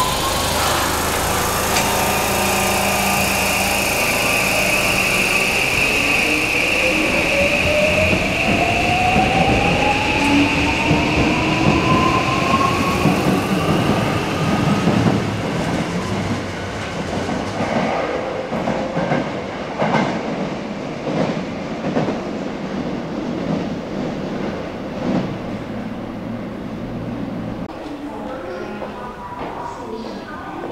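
Hokushin Kyuko Railway 7000 series electric train pulling away, its Mitsubishi full-SiC VVVF inverter drive giving a whine that climbs steadily in pitch as the train accelerates, over a steady high tone that stops about halfway through. In the second half the wheels click over rail joints as the cars pass, and the sound slowly fades.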